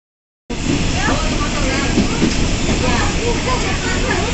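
Steady rumble and hiss of an electric commuter train running along the track, heard from inside the carriage, with indistinct voices talking over it. The sound comes in abruptly about half a second in.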